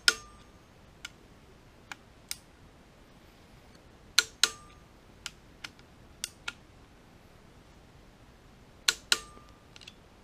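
Click-type torque wrench breaking on the three cam gear bolts, one sharp double click per bolt, the first near the start, then about four and nine seconds in, each with a brief metallic ring. Lighter clicks between the pairs as the wrench is moved to the next bolt.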